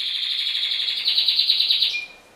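A pet bird singing a rapid, high-pitched trill that grows stronger about a second in and stops just before the end.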